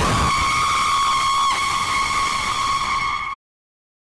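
Loud, harsh jump-scare shriek sound effect held at one pitch. It starts suddenly and cuts off abruptly after a little over three seconds.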